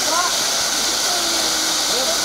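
Steady, even hiss of stage spark fountains spraying sparks, with a faint singing voice drifting over it.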